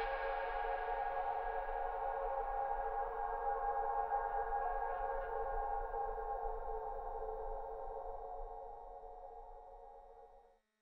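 Eurorack modular synthesizer drone through a Mimeophon delay and Black Hole DSP reverb: a held chord of steady tones that gradually loses its brightness and fades away near the end.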